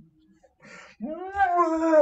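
A man's long, drawn-out whining groan of exasperation, after a short breath in; the groan rises in pitch and then slowly sags.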